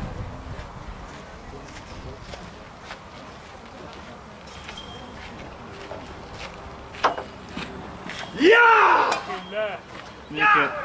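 A single sharp knock about seven seconds in, as the rolling minigolf ball strikes the obstacle at the end of the lane. A man's voice then calls out loudly near the end, over low outdoor background.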